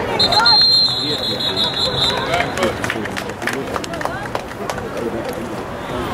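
A referee's whistle blown in one long, steady blast lasting nearly two seconds, ending the play. Shouts and chatter from players and the sideline carry on through and after it, with scattered clacks of contact.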